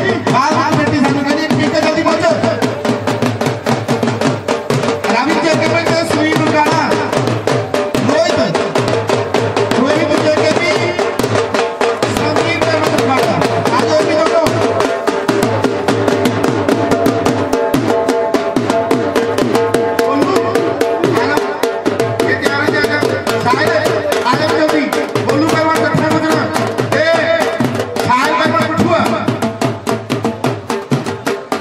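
Music with fast, steady drumming and a voice over it.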